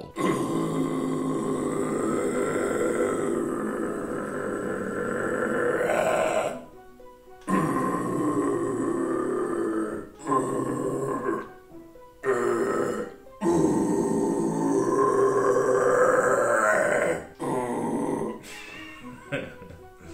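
A man's death metal growl attempts by a beginner on his first day of practice without any guidance: about six or seven rough, sustained growls, the first and longest lasting about six seconds, the rest one to four seconds, with short breaks for breath between them.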